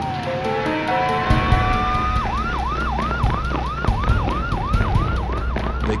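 Police car siren sounding a slow wail, then switching about two seconds in to a fast yelp of about three sweeps a second. Low thumps sound beneath it.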